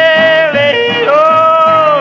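Male country-blues singer yodeling in the blue-yodel style, the voice breaking up into a high falsetto note about a second in, over a steadily strummed acoustic guitar.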